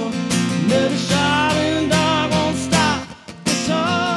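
Live country song on a strummed acoustic guitar, with a woman's voice holding and sliding between notes without clear words. There is a brief break a little after three seconds in.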